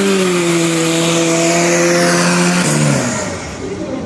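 Drag cars launching hard off the start line, a Seat Leon and a diesel VW Golf TDI, with a loud engine note held at a steady pitch under full throttle. About three seconds in, the note drops in pitch and fades as the cars pull away down the strip.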